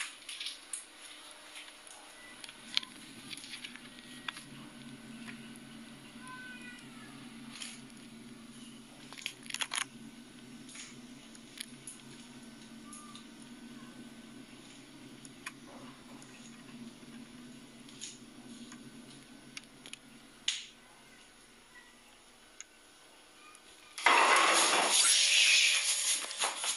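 Quiet kitchen room sound with scattered faint clicks and a low hum, then a sudden loud noise about two seconds before the end.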